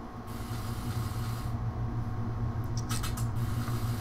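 A low, steady electrical hum from the opening of a music-video trailer's soundtrack. It swells up in the first half second, and a few sharp clicks come about three seconds in.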